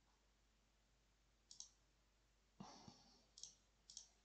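Faint computer mouse clicks, a few short, sharp ones spaced a second or so apart, in near silence. A brief soft noise comes about two and a half seconds in.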